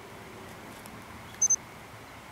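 Steady outdoor background hiss, with a short high-pitched electronic beep from a digital wristwatch about one and a half seconds in.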